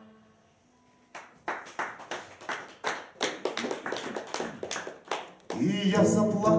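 An acoustic guitar chord rings out and fades. A second later come sharp rhythmic hits, about three a second, for some four seconds. The guitar comes back in loudly near the end.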